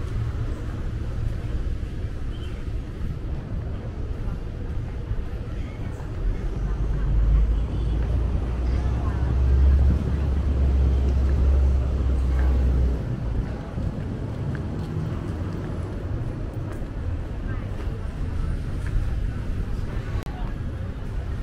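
City street ambience with people talking and a low vehicle engine rumble that swells about six seconds in, holds for several seconds as the loudest sound, then fades.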